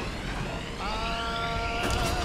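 Film score and sound design: a low rumble with a faint rising whine, then a held chord of several steady tones comes in about a second in.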